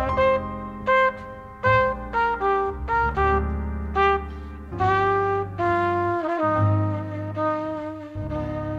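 Music: a trumpet playing a melody of short notes over a low bass line, moving to longer notes, the last one held with a slight waver.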